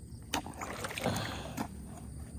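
Water sloshing and swishing as a gold pan is worked in shallow muddy water, swelling through the middle. Two sharp knocks, about a third of a second in and again near the end.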